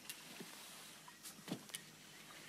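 A few short, faint squeaks of a cloth shirt rubbing over the polished wood of a piano, over a steady hiss.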